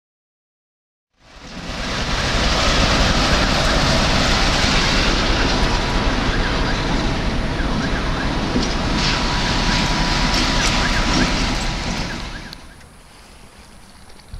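Loud, steady vehicle noise that fades in about a second in and drops away sharply shortly before the end.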